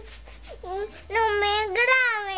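A young boy crying: a short whimper, then a long high-pitched wail from about halfway through.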